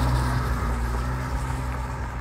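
A car on the road close by, its engine a steady low hum that slowly fades.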